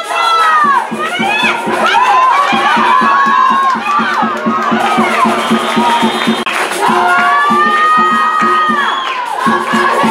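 Crowd cheering and shouting, many voices rising and falling in pitch. From a couple of seconds in until near the end, a steady rapid beat of about four strokes a second runs underneath.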